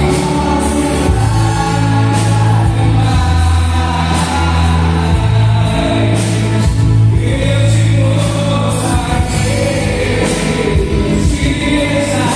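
A man singing a gospel song into a handheld microphone through the church sound system, over loud backing music with sustained bass notes and a steady beat.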